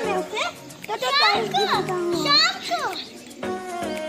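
A young boy's high-pitched voice calling out in short exclamations, with music playing underneath.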